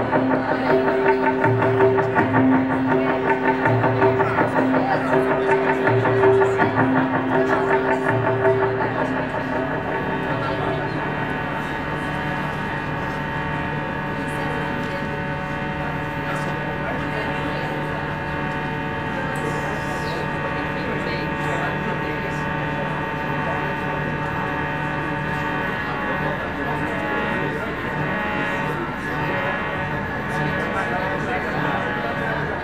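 Live music played through a PA: a looped figure of low notes and higher tones repeats about every two seconds, then gives way after about ten seconds to a steady, layered drone of held tones.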